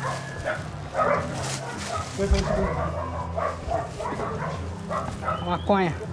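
Men talking in Portuguese, with a dog barking in the background.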